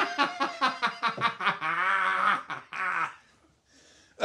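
A man laughing hard: a quick run of laugh bursts, then one long drawn-out laugh that dies away about three seconds in.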